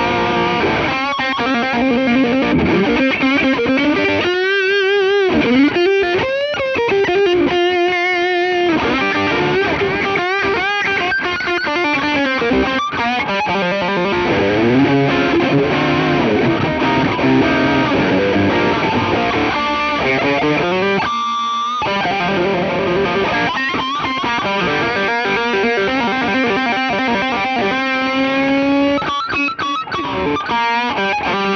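Sterling by Music Man AX3FM electric guitar with two humbuckers, played through a Fender Twin Reverb amp and The Duellist drive pedal. It is distorted, high-gain lead playing: quick runs and held notes, some shaken with wide vibrato.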